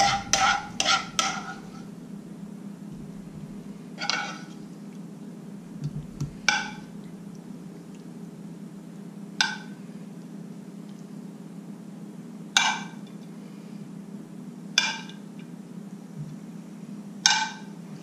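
A spoon clinking against a skillet as sauce is served out: a quick run of four ringing clinks at the start, then single clinks every two to three seconds.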